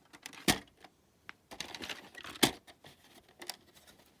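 Plastic VHS cassette being handled: scattered clicks and rattles as it is turned over and its hinged tape door is opened, with two sharper clicks, one about half a second in and a louder one just past the middle.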